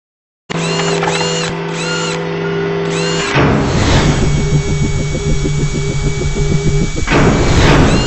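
Logo-animation sound effects. A steady electronic drone with short whirring chirps repeating about every half second, then a sudden whoosh about three seconds in. After it comes a fast, even mechanical-sounding pulse that ends in a rising swoosh near the end.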